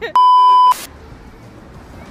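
A single loud, steady electronic bleep tone lasting about half a second. It starts and stops abruptly and blanks out all other sound while it plays, like a censor bleep edited over the sound track. A brief hiss follows it.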